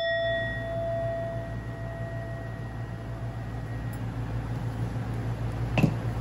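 Singing bowl ringing out after a single strike, a low tone with a few higher overtones fading away over about three to four seconds. Near the end comes a brief, louder voice-like sound.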